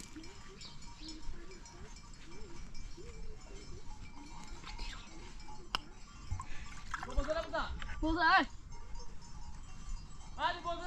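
Livestock bleating: two loud, quavering bleats about seven and eight seconds in, over fainter calls earlier.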